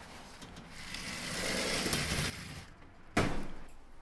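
A sliding glass door running along its track with a rising rush that stops abruptly, then a single sharp bang a little past three seconds as a door is shut.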